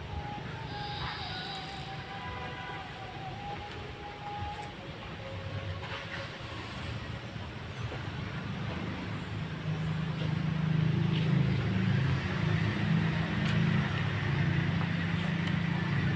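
A low engine hum, like a vehicle running nearby, growing louder over the second half.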